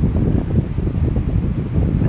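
Wind noise on the microphone: a steady, churning low rumble of moving air buffeting the mic.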